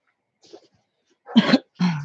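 A person coughing twice in quick succession, about a second and a half in.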